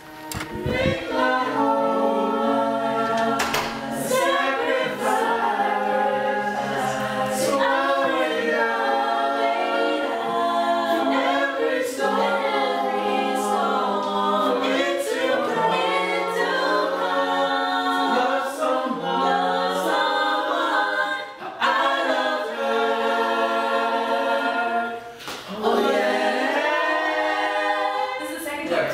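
A gospel vocal group singing a cappella, several voices in harmony, with two brief breaks in the second half.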